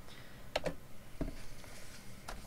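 A few separate clicks of computer keys, about four in the first second and a half, over a faint steady hum.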